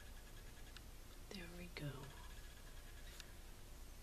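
A woman's soft murmured vocal sounds: two short, wordless utterances that fall in pitch, about a second and a half in. Around them is faint room tone with a thin steady high tone.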